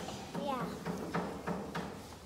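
Children's voices: short, indistinct words and exclamations.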